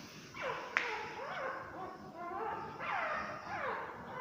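Newborn puppies squealing and whimpering: a string of high cries that each fall in pitch, with a sharp click about a second in.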